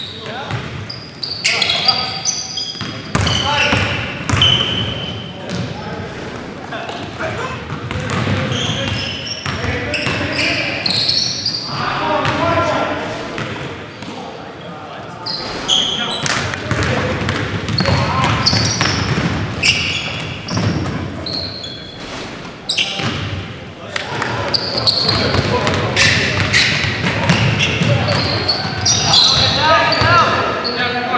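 Live basketball game sound in a large echoing gym: a basketball bouncing on the hardwood floor in repeated sharp knocks, short high-pitched sneaker squeaks, and players' voices calling out on the court.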